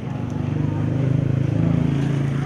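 A motor vehicle's engine running close by, growing louder through the first second and then holding steady.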